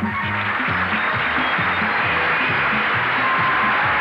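Up-tempo music with a steady, repeating bass beat, joined right at the start by a dense rushing noise laid over it.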